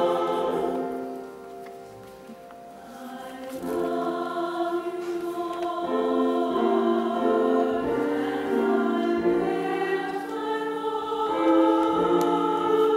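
Mixed church choir singing in parts with long held notes. A phrase dies away about a second in, the singing comes back softly a couple of seconds later and grows louder toward the end.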